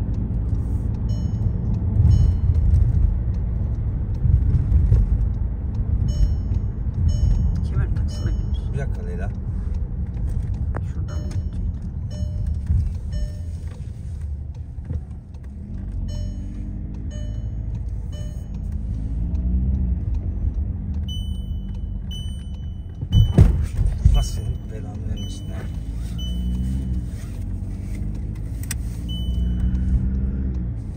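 Car driving at night, heard from inside the cabin: steady low road and engine rumble. A short high electronic beep repeats about once a second in stretches, and there are two loud knocks about three-quarters of the way through.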